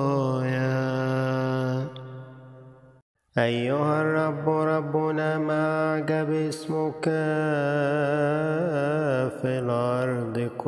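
A solo man's voice chanting Arabic psalmody in long drawn-out notes with a wavering vibrato. Nearly two seconds in the chant fades away, there is a near-silent gap of about a second, and then the chanting starts again.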